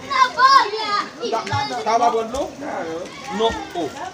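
Several high-pitched voices, children's among them, calling out and talking over one another.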